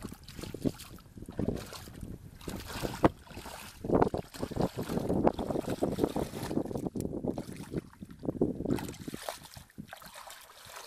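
Bare feet sloshing and squelching through shallow muddy water, churning up the mud, in irregular splashes that come thickest from about four seconds in until near the end.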